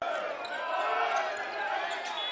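Basketball being dribbled on a hardwood court, with voices in the arena behind it.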